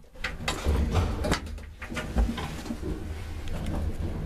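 An old passenger elevator's mechanism: a run of sharp clicks and knocks over a steady low hum.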